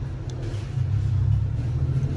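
A steady low rumble with a faint hiss above it and no distinct events.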